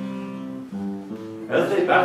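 Acoustic guitar accompaniment of a sea song, chords held and changing a couple of times; about one and a half seconds in, singing comes back in.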